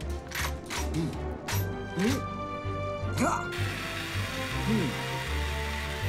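Cartoon action music with a pulsing bass beat, with short mechanical clicking effects in the first half. From just past halfway, a steady hiss of a fire hose spraying onto a kitchen fire joins in.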